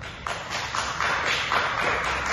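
Hand clapping from a small audience, starting about a quarter of a second in and running steadily as uneven overlapping claps.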